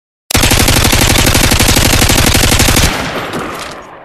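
Sound effect of automatic gunfire: one long burst of rapid, evenly spaced shots that starts abruptly and cuts off just under three seconds in, leaving an echo that fades away.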